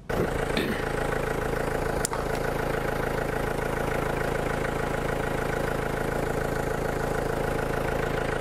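Car engine starting, catching at once and settling into a steady idle, with one short click about two seconds in.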